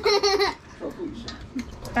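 A person laughing in a high voice during the first half second, then quieter voice sounds, with another laugh near the end.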